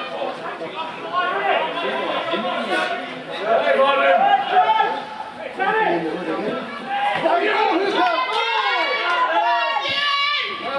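Several voices shouting and calling over one another around a rugby match in open play. The shouting gets louder from about three and a half seconds in.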